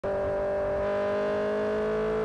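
Sport motorcycle engine running at speed on a race track, holding a steady high note that creeps slightly upward in pitch, heard from a camera mounted on the bike.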